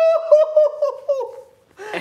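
A man laughing in a high pitch: one held note that breaks into quick ha-ha pulses and dies away about a second and a half in.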